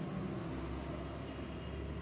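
A steady low rumble under faint background noise.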